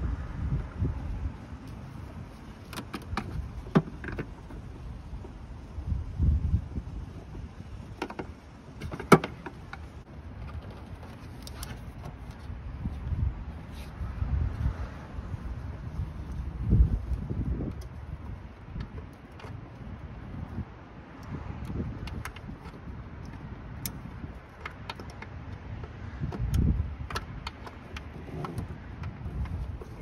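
Irregular clicks, clinks and knocks of hand tools and parts being handled in a car's engine bay as hoses are worked off the intake plenum, with a sharper click about nine seconds in. Low thumps come and go underneath.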